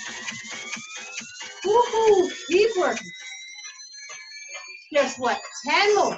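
A rising electronic whine, several tones gliding slowly upward together for about three seconds, with short voice-like exclamations about two seconds in and again near the end.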